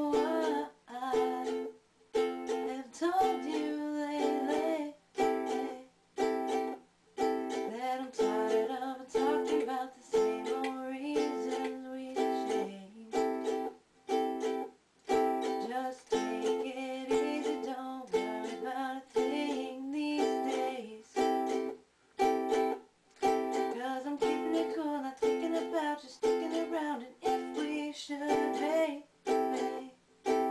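Ukulele strummed in a song while a woman sings along. The sound breaks off briefly and sharply about once a second throughout.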